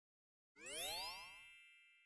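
Cartoon chime sound effect: about half a second in, a quick upward-sweeping glide settles into a bright ringing ding that fades slowly.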